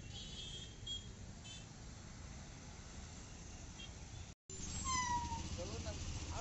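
Road traffic: a steady low rumble of engines with a few faint, short high chirps. After a brief dropout about four seconds in, the rumble comes back louder, and a short high-pitched cry falls in pitch.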